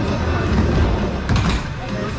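Skateboard wheels rolling on the plywood surface of a wooden skate bowl, a steady low rumble, with a sharp knock about one and a half seconds in.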